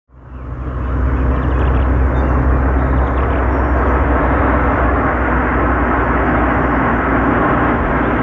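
1955 Sunbeam 90 Mark III drophead coupé's two-and-a-quarter-litre four-cylinder engine running steadily with road noise as the car drives along. The sound fades in over the first second, then holds a steady low drone.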